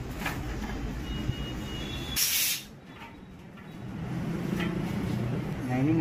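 A short, loud hiss of compressed air, about half a second long, a little over two seconds in, over a steady low rumble that stops when the hiss begins and builds back up later.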